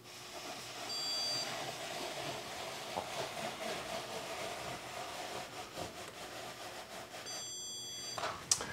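Handheld electronic stud finder sliding across a drywall ceiling with a steady faint scraping hiss, giving a short high beep about a second in and another beep near the end, the signal that it has found the next ceiling joist.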